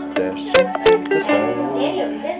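Mandolin picked with a flatpick, a quick run of single notes, with two sharp clicks in the first second.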